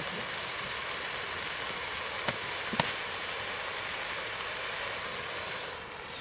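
Jute leaves frying in oil in a metal wok, a steady sizzling hiss, with two sharp knocks of the metal spatula against the wok about two and a half seconds in.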